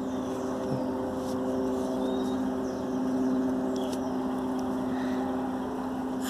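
A motor engine droning steadily: one even hum that swells a little in the middle and eases off again.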